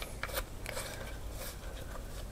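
A few faint clicks and knocks from plastic gimbal parts being handled: a DJI Osmo handle with its Z-axis adapter fitted, most of them in the first second.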